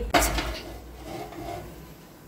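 A large milk-filled aluminium pot set down on a gas stove's pan support: a sharp clank just after the start, then a fainter metallic ring about a second in.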